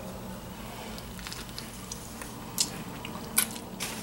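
A person biting into and chewing a mouthful of sub sandwich, with a few short sharp mouth clicks, the strongest in the second half, over a low steady hum.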